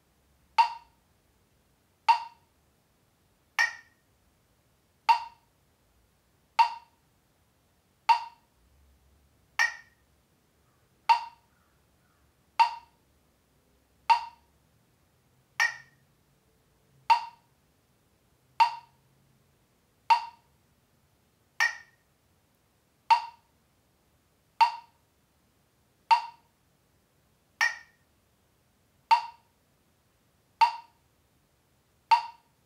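Metronome clicking at 40 beats per minute, one short woodblock-like click every second and a half, with every fourth click higher-pitched as the accented first beat of the bar.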